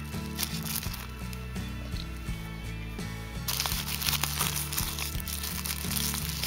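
Background music with steady low notes changing in steps, and tissue paper rustling and crinkling under a hand, much louder from a little past halfway.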